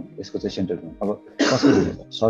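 A man speaking, with a loud cough or throat-clearing about one and a half seconds in.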